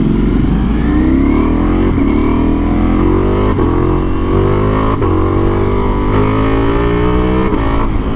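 Ducati Multistrada V4's V4 engine, its catalytic converter deleted, accelerating hard under way. The engine note climbs again and again as it pulls through the gears, with a short crack from the exhaust at each of about four upshifts.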